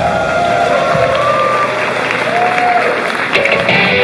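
An idol pop song's backing track winding down at the song's end, its bass dropping out about half a second in. The audience applauds and cheers over it, with voices calling out.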